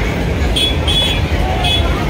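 Busy fairground ambience: a steady low rumble under background chatter, with three short high-pitched toots, the first about half a second in and the last near the end.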